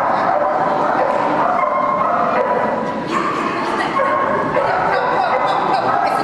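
A small dog barking and yipping over and over, with people's voices in the background.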